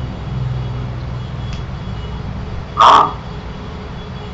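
A steady low hum, with one short, loud, harsh cry about three seconds in.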